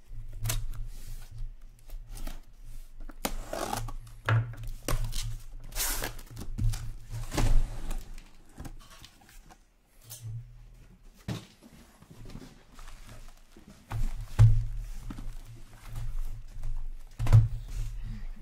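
Cardboard shipping case being slit open with a hobby knife and unpacked: tape and cardboard scraping and tearing, rustling, and sealed hobby boxes being handled and set down with several sharp thumps.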